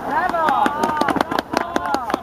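Several high young voices shouting on a football pitch, with a quick run of sharp clicks or knocks in the second half.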